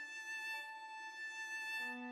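Slow, soft bowed cello melody: one long held note, moving to a lower note near the end.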